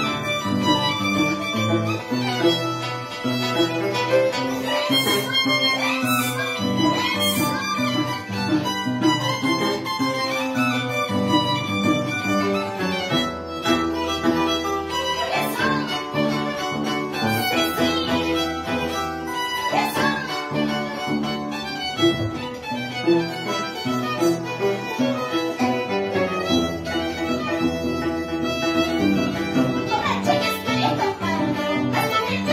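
Violin and Andean harp playing an instrumental passage. The violin carries the melody over the plucked harp.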